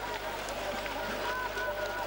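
Trackside sound of classic-technique cross-country skiers climbing: skis and poles working on snow as a steady haze of noise, with faint distant voices.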